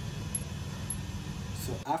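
A steady low background rumble with no distinct tool sounds, cut off near the end as a man starts speaking.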